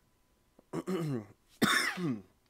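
A person coughing and clearing their throat in two rough bursts, one about a second in and a louder one near the end.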